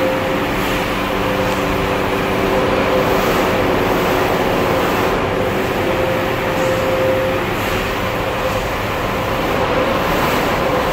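Steady mechanical running noise with a low hum from a motorised aircraft simulator ride as it turns and tilts.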